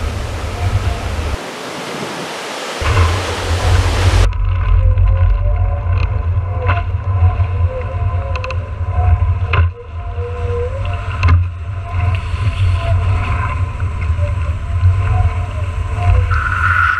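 Wind buffeting the microphone of a board-mounted action camera on a kite foilboard at speed, a heavy low rumble, over water rushing past. For the first four seconds a loud hiss of spray rides on top and then cuts off sharply. A faint wavering whine runs underneath.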